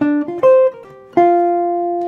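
Archtop jazz guitar playing a single-note swing phrase in E-flat major: a run of quick notes, then a held final note from about a second in that rings to the end. It is a stock jazz lick displaced to start one beat later.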